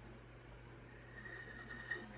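Faint rubbing of a hand across the top of an acoustic-electric guitar, wiping dust off the finish, over a steady low hum.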